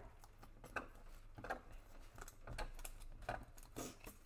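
Faint, scattered scratches and small crackling clicks of a weeding tool working under thin cardstock and peeling it off a sticky cutting mat.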